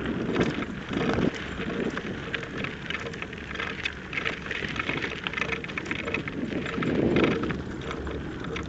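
Loose gravel crunching and crackling steadily under travel along a gravel road, with wind rumbling on the microphone about a second in and again near the end.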